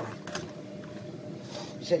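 A single sharp click of a utensil at the start, then a quiet stretch of kitchen background with a faint steady hum. Speech begins near the end.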